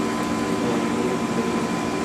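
Steady machinery hum of an instrument lab, the spectrometer's vacuum system and the room's air handling, with a few fixed high whining tones running through it.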